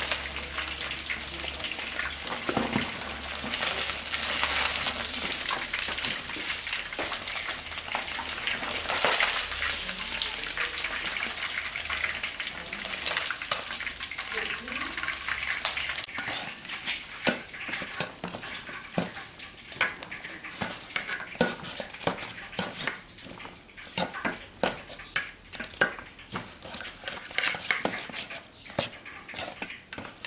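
Chicken feet deep-frying in a wok of hot oil, a dense steady sizzle, with metal tongs clacking as pieces are lifted out. About halfway through the sizzle stops, and metal tongs click and scrape against a steel bowl as the fried feet are tossed.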